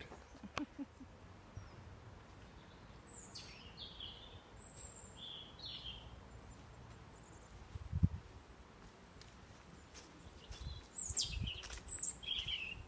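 Outdoor ambience with a few short, high bird chirps that fall in pitch, a cluster about three to five seconds in and more near the end, over a faint low rumble. A single soft thump about eight seconds in.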